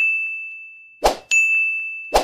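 Notification-bell 'ding' sound effect from a subscribe-button animation: a bright ding rings out and fades. About a second in comes a short swish, followed at once by a second ding.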